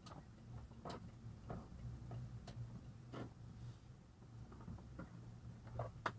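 Faint steady low hum inside a slowly moving car, broken by about eight sharp, irregularly spaced clicks and ticks, two of them close together near the end.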